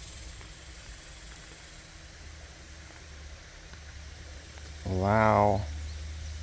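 A man's single drawn-out, wavering vocal sound, like an impressed 'ooh' or hum, lasting under a second about five seconds in, over a steady low background hiss.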